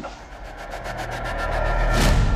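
A low rumbling drone that swells steadily in level, with a faint fast ticking above it, building toward a loud hit.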